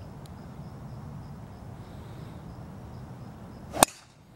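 A golf driver striking a ball off the tee: one sharp, loud crack near the end, over a steady low background noise.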